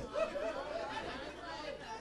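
Faint murmured voices of a church congregation responding during a pause in the sermon, fading over the two seconds.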